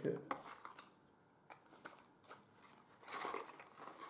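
Cardboard boxes and packaging being handled and rummaged through: a few light clicks and taps, then a longer rustle about three seconds in.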